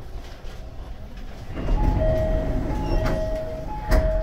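Commuter train moving slowly along a station platform: a low rumble that swells about a second and a half in, with a steady high-pitched whine and a couple of sharp knocks near the end.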